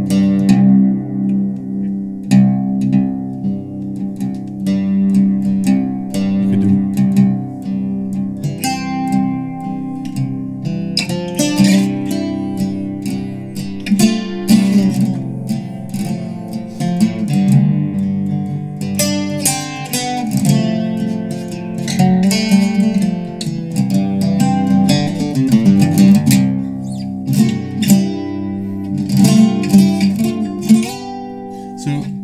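Eastman mandocello played solo, its paired steel strings picked. It starts with low notes left to ring, then from about nine seconds in the picking gets busier with quick runs, low bass notes under higher melody notes.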